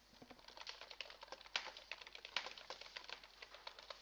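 Marker pen on a whiteboard: quick, irregular taps and short scratching strokes as it writes and draws.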